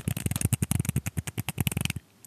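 Rapid tapping and clicking on two miniature plastic football helmets held close to the microphone, many sharp taps a second.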